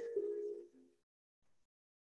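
A woman's voice trails off in the first second, followed by near silence: room tone.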